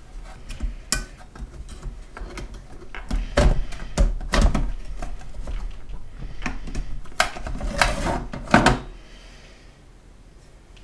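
Clicks, knocks and scraping as a 3.5-inch SATA hard drive is unclipped from its metal drive cage and pulled out of a desktop computer's sheet-metal case. It is an irregular series of sharp handling noises, loudest shortly before the end.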